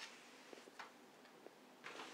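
Near silence with a few faint, scattered clicks and taps: handling noise as a knit sweater is lifted and spread flat on a table.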